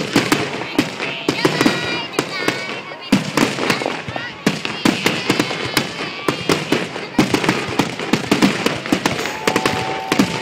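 Aerial fireworks shells bursting in a rapid, continuous barrage, several loud reports a second, with crowd voices underneath.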